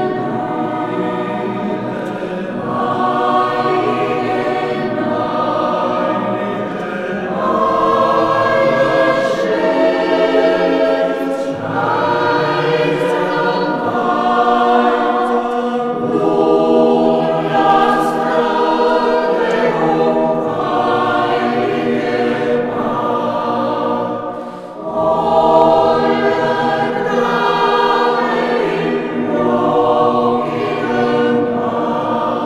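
Mixed church choir of men and women singing in long, sustained phrases, with a brief drop between phrases late on.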